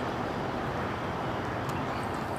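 Steady low rumble and hiss of background noise, with no distinct event standing out.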